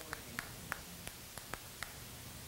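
Quiet room tone with a string of light, irregular clicks, about seven in two seconds, from a plastic marker being fidgeted with in the hands.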